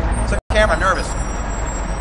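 Steady low rumble of traffic, with a man's voice speaking briefly about half a second in, just after a momentary dropout in the sound.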